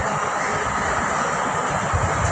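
Steady, even rushing background noise with no speech.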